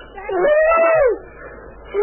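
A person's drawn-out wailing cry that rises and falls in pitch, one cry lasting under a second about half a second in, and another beginning right at the end.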